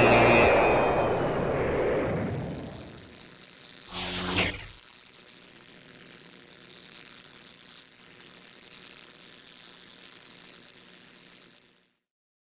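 Title-animation sound effects: a loud noisy rumble that fades away over the first three seconds, a short whoosh about four seconds in, then a faint steady hum that cuts off just before the end.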